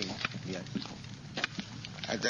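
Faint men's voices talking in a few short, broken syllables, with small clicks between them.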